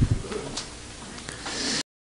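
A man says a short "ye" (yes) into a handheld microphone, followed by a few faint clicks and rustles of the paper sheet in his hand. The sound cuts off abruptly just before the end.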